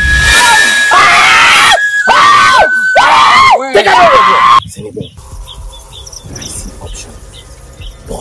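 Several loud, drawn-out shouted cries, rising and falling in pitch, over trailer music. The sound cuts off suddenly about four and a half seconds in, leaving a much quieter background.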